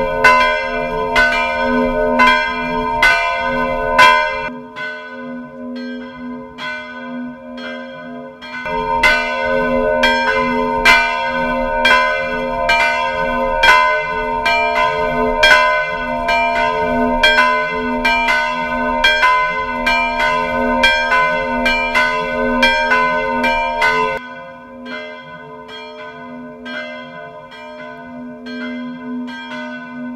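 The two church bells of the tower swinging and ringing together, heard up close in the belfry: a quick, overlapping run of clangs over a steady ringing hum. The strikes grow fainter for a few seconds after about four seconds in, and again from about 24 seconds in.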